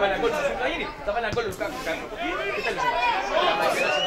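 Many voices shouting and talking over one another: players and onlookers at a football match.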